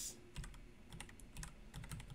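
Faint computer keyboard typing: irregular key clicks while lines of code are commented and uncommented in an editor.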